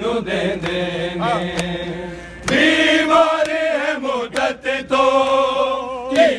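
Men chanting a Punjabi noha (Shia lament) in unison, unaccompanied, with the chorus growing louder and fuller about halfway through. Sharp slaps of chest-beating (matam) are scattered through the chant.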